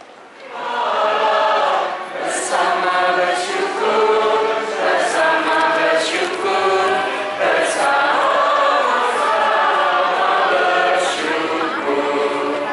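Church congregation singing a hymn together, many voices holding long notes. The singing comes in loudly about half a second in and carries on steadily.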